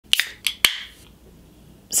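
A LaCroix sparkling water can being cracked open: a few sharp clicks from the ring-pull, the last and loudest one followed by a short fizz of escaping carbonation that quickly fades.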